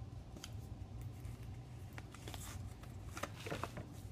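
Faint rustling and small clicks of hands unwrapping and handling a small boxed bronzer compact, the packaging crinkling in short bursts, busiest in the second half.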